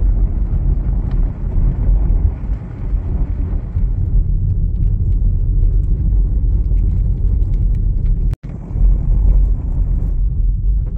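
Car driving on a rough dirt road, heard from inside: a steady low rumble of tyres and engine. It cuts out for an instant about eight seconds in.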